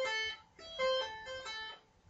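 Electric guitar playing a legato tapped arpeggio: notes tapped at the 12th fret and pulled off to the 8th and then the 5th, a quick run of single notes with a short break about half a second in.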